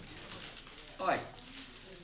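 A person's short vocal sound about a second in, sliding steeply down in pitch.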